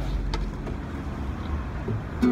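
A low, steady outdoor rumble, typical of street traffic or wind on the microphone. A single light knock comes about a third of a second in, as an acoustic guitar is handled and lifted into playing position.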